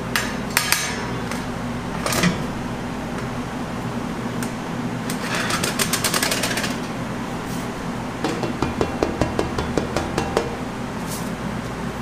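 Stainless steel chocolate frames and trays knocking and rattling against the steel base of a chocolate guitar cutter as a slab of chocolate is flipped and set down. There are a few sharp knocks, a rasping slide midway, and a quick run of small clicks and rattles later on, over a steady machine hum.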